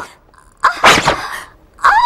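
A woman's short, breathy outcry, a sharp gasp or yelp of pain, just over half a second in, fading within about half a second.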